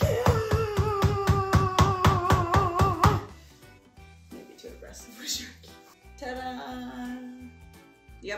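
A meat tenderizer, used flat side down, pounding a chicken breast sealed in a plastic bag under a towel to flatten it thin. There are rapid blows, about five a second, for about three seconds, under a long held shout. After that the pounding stops and quieter music plays.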